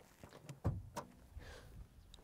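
Faint clicks and one soft knock about two thirds of a second in, from a car's bonnet release lever being pulled inside the cabin.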